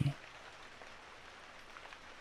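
Faint, steady rain: a background rain recording with an even patter and no other sound.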